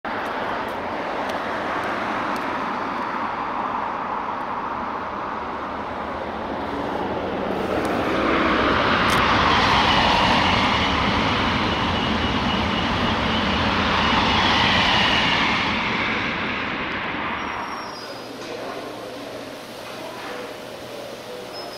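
Outdoor road traffic noise, swelling as a passing vehicle goes by about eight seconds in and fading away after about sixteen seconds.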